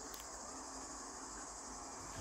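A faint, steady high-pitched hiss, with a couple of soft clicks near the start.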